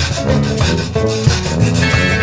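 Zydeco band playing live, an instrumental passage with a bass line and a scraping beat running through it, the sound of a rubboard.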